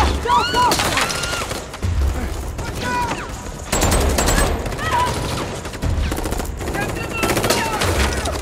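Heavy gunfire: many rifle shots fired in rapid, overlapping volleys, with a fresh heavy burst about every two seconds and short high whines between the shots.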